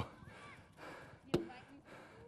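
A football struck once with a sharp smack a little over a second in, during a goalkeeper catching drill, with faint voices around it.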